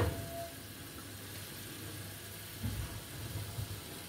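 Faint, steady low hum of kitchen background, with a soft low bump about two and a half seconds in as a grill pan is taken out and handled.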